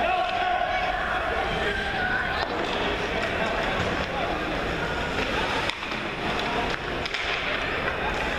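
Youth ice hockey game heard from the stands: skates scraping on the ice and voices calling out, with two sharp clacks of stick and puck about two-thirds of the way through.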